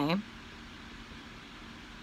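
A woman's voice ends a word right at the start, then only steady, low room noise with a faint steady hum.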